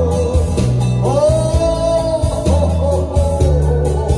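A man singing into a microphone over backing music with guitar and bass, holding long notes that waver in pitch.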